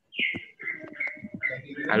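A bird chirping in short calls about every half second, picked up by a participant's microphone on a video call, with a few clicks near the start.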